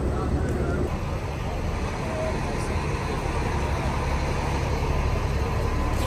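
Diesel engines of parked coach buses idling, a steady low rumble.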